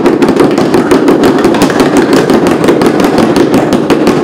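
Three handmade drums, plastic buckets with packing-tape heads, beaten hard and fast with empty plastic PET bottles. The many overlapping hits make a loud, dense, unbroken clatter.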